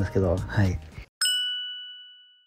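A single bright ding sound effect with two clear ringing tones, struck once about a second in and fading out over about a second and a half, marking a cut to a new scene.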